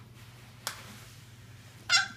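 A child's short high-pitched squeal near the end, over a quiet room with a low steady hum. A single small click comes about two-thirds of a second in.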